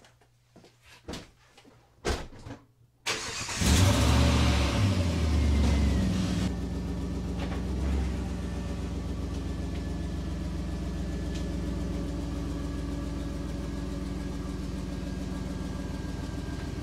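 A few light clicks and knocks, then about three seconds in the Jeep Grand Cherokee's engine starts, running loud for a few seconds before settling into a steady idle.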